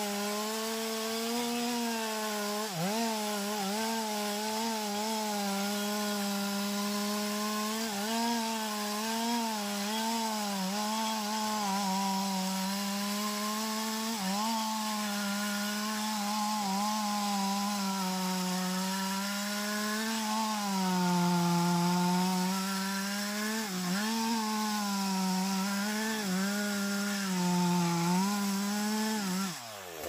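Chainsaw running hard while cutting through anjili (wild jack) wood, its pitch wavering and dipping now and then under the load of the cut. Just before the end the throttle is let off and the engine pitch falls away.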